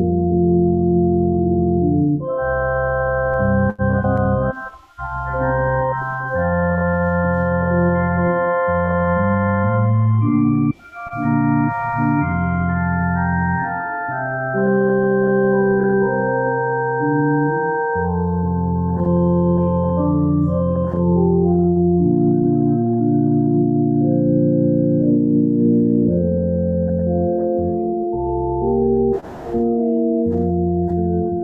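Church organ playing a prelude: full sustained chords over a strong bass, changing every second or two. There are brief breaks between phrases about five seconds in, around eleven seconds, and near the end.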